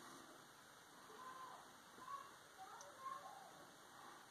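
Near silence: room tone, with a few faint, brief chirping tones in the middle.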